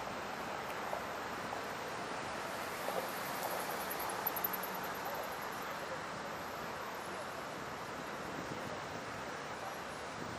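Outdoor city background: a steady wash of noise with faint, indistinct voices and a few light knocks around the middle.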